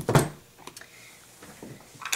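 A short knock right at the start, then a few faint light taps of craft supplies being handled on a tabletop.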